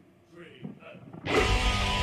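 After a quiet second, a metal song starts suddenly with loud distorted electric guitars and a heavy low end.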